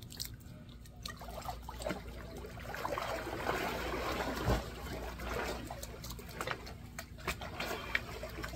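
Swimming-pool water splashing and trickling as a person swims away from the pool edge, the splashing busiest in the middle, with one low thump about halfway through.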